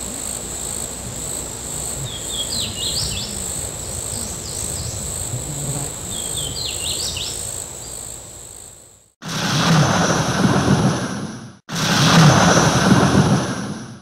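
Outdoor nature ambience: a steady high insect drone with three short bursts of bird chirps, which drops away and gives way to two loud bursts of rushing noise, each about two seconds long with a brief gap between them.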